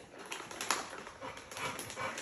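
Plastic treat package crinkling as it is handled and opened by hand: a run of short rustles and crackles.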